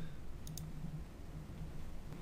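Two quick computer mouse clicks about half a second in, a tenth of a second apart, over faint low background noise.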